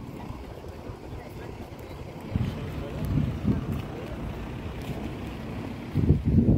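Wind buffeting the microphone in irregular low rumbling gusts, stronger from about two seconds in, with people talking faintly nearby.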